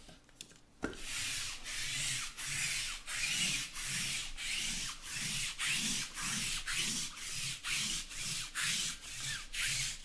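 Sticky lint roller rolled back and forth over a cloth table covering, its adhesive sheet crackling as it peels off the fabric. The strokes start about a second in and repeat about two to three times a second.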